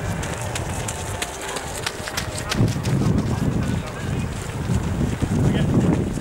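Runners' footsteps passing close by as a group of race runners goes past, heard as a scatter of short quick steps. Wind buffets the microphone in gusts, and indistinct voices sound in the background.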